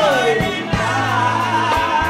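A woman singing a gospel song into a microphone, accompanied by electric guitar and a band with bass and drums. Her voice slides down at the start, then holds a long note.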